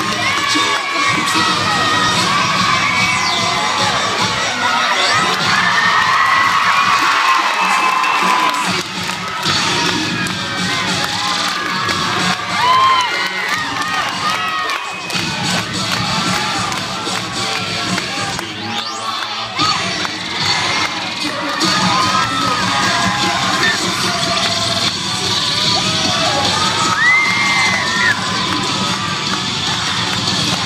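A crowd of cheerleaders and spectators cheering and screaming throughout, with many overlapping high shouts and squeals as stunts go up.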